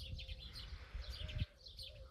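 Small birds chirping faintly in short, scattered calls over a low background rumble.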